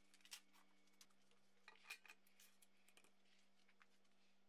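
Near silence: a few faint clicks and taps, the strongest about two seconds in, over a faint steady hum.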